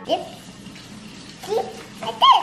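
Steady rushing noise like water running from a kitchen tap, with a young child's voice sounding briefly twice, once near the start and again about one and a half seconds in.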